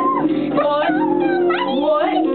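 Girls singing a home-made song with long, sliding, wavering notes, over acoustic guitar strings ringing underneath.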